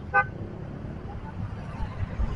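City road traffic, cars and motorbikes, with a steady low rumble. A vehicle horn gives one short toot just after the start.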